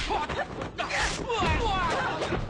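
Kung fu film fight sound: men's voices shouting over the whooshing swishes of punches and kicks, with a sharp hit right at the start and a louder swish about a second in.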